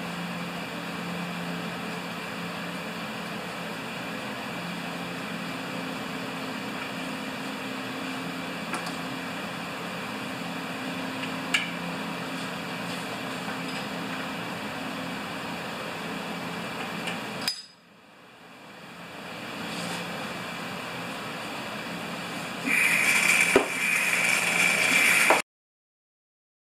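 Old engine oil being drawn out of a push lawnmower engine's crankcase through a tube into a hand-pumped vacuum oil extractor: a steady low hiss, then a louder rush of air and oil near the end that stops abruptly.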